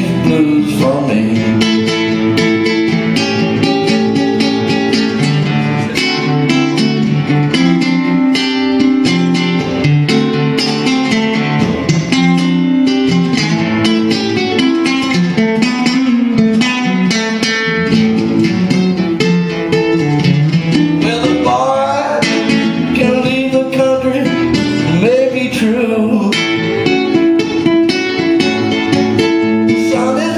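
Solo amplified guitar playing an instrumental blues break: picked single-note runs over a moving bass line, played steadily without a pause.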